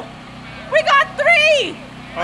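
High-pitched child's voice calling out in short excited exclamations about a second in, over a low steady hum.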